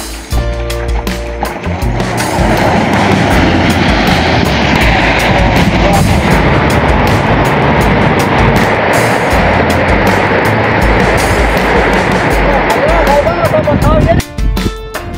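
Music for the first two seconds, then a loud, continuous roar of a rockslide: stones and debris pouring down a steep mountain slope.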